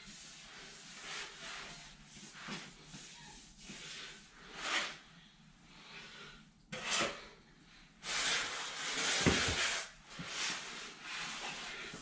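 Quiet rubbing and scuffing of a damp sponge being wiped over a tile floor and a small plastic bucket being handled, with a longer stretch of rubbing about eight seconds in and a low knock just after.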